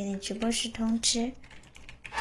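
A woman talking for about the first second, mixed with quick clicks of a computer keyboard being typed on; the talk stops and a few fainter clicks follow.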